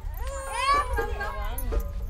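Small child fussing and crying in high, wavering wails that bend up and down in pitch, over a low steady rumble.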